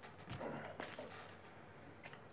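Faint taps and brief rustles of a plastic water bottle being picked up and handled on a desk, clustered in the first second.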